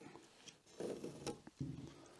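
Faint scratching of a pencil drawing marks on rough sawn timber, in two short strokes, the first about a second in.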